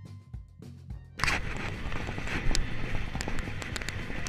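A short music intro with a beat, cut off about a second in by loud wind and road noise on the microphone of a bicycle rider moving along a road, with scattered knocks and rattles.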